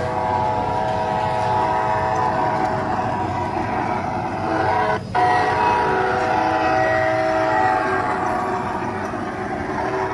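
Recorded train horn sound effect sounding a long, steady chord of several held tones over train running noise, accompanying a model serving train. It breaks off for a moment about halfway, then carries on.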